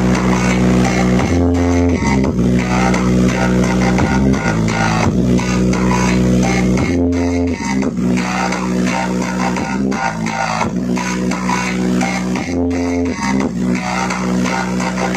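Loud DJ dance music played through a miniature horeg sound-system rig at a sound check, with a strong bass line and a plucked guitar-like riff; the same phrase repeats about every five and a half seconds.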